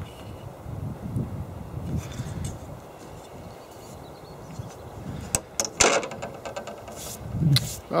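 Handling noise: a low, uneven rumble on the microphone, with a few sharp clicks and knocks about five to six seconds in and again near seven seconds in.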